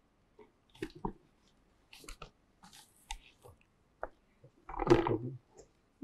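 A cardboard gift box and paper gift bag being handled as a present is opened: scattered light clicks and rustles, with one louder, brief burst of noise near the end.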